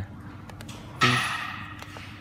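Faint clicks of the keypad buttons on a DSP A18 handheld CNC controller being pressed, over a steady low hum. A short spoken word about a second in trails into a brief hiss.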